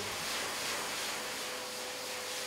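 Dog groomer's high-velocity pet dryer blowing air through its hose nozzle into a dog's wet coat, the drying step after the shampoo that blows out the undercoat: a steady rushing hiss, with a faint motor whine held on one pitch from about half a second in.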